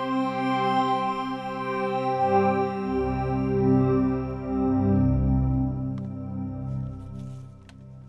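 Native Instruments FM8 additive-synthesis pad holding a thick, stringy chord through chorus, reverb and a tempo-synced delay mixed mostly dry. A lower note joins about three seconds in, and the pad fades away near the end.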